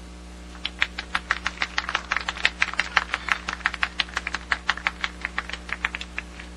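Scattered applause from a small crowd: a few people clapping irregularly, starting just under a second in and dying away at the end.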